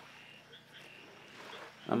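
A quiet pause in a man's speech, with only a faint background and a few brief, faint high tones. His voice starts again near the end.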